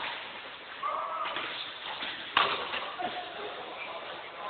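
Badminton rally: a sharp racket hit on the shuttlecock about two and a half seconds in, the loudest sound, with a fainter hit a little after one second. Short high squeaks of shoes on the court floor come around the hits.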